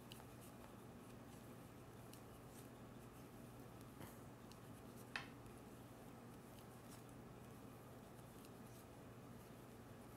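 Near silence with faint clicks and rubbing of wooden knitting needles working yarn stitches, over a low steady hum. Two slightly louder clicks come about four and five seconds in.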